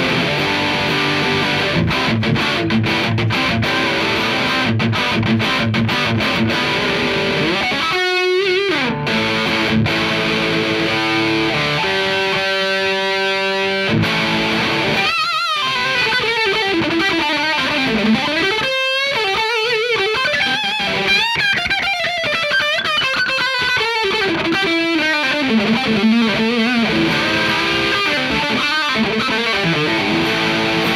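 Electric guitar through a Dawner Prince Electronics Red Rox distortion pedal at a full-gain setting, playing a heavy riff. It opens with short, fast chugging strokes, then moves to held notes and a lead line with string bends and vibrato.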